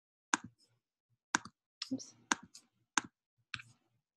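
Computer mouse button clicks, about five sharp clicks spread across a few seconds, some in quick pairs, with a short spoken "oops" about halfway through.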